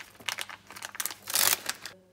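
Plastic packet of tortilla wraps crinkling as a hand opens it and pulls a wrap out: a run of irregular crackles, loudest a little past the middle.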